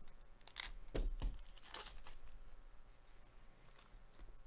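A foil trading-card pack being slit open along its top seal with a pack cutter, the foil wrapper crinkling as it is pulled apart. The sound comes as a few short rasps in the first two seconds, with a faint one near the end.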